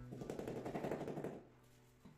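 A rapid rattling scrape, many small clicks a second, lasting about a second and a half, from the tiler working at the edge of a ceramic floor tile, over background music.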